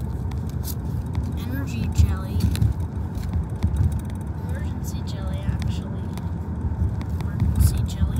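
Steady low road rumble inside a moving car's cabin, with faint voices talking quietly a couple of times and light clicks mixed in.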